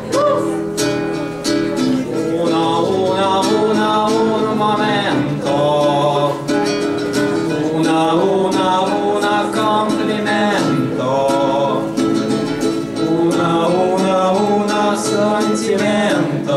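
Two boys singing a song in a Neapolitan style, accompanying themselves on two acoustic guitars.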